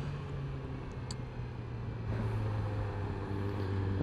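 2020 Yamaha R6's 599 cc inline-four engine running at a steady, even pitch while riding, heard from the rider's seat. A faint short tick sounds about a second in.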